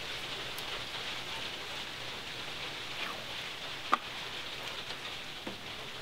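Steady low hiss with a few faint clicks and one sharper click about four seconds in, as a castle nut is spun off a steering knuckle's ball-joint stud by hand.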